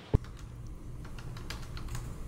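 Typing on a computer keyboard: scattered light key clicks over a low steady room hum, after one loud thump just after the start.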